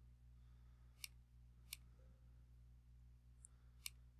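Near silence over a low steady hum, with three faint computer-mouse clicks: about one second in, again just after, and once more near the end.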